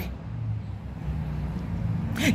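A low, steady hum.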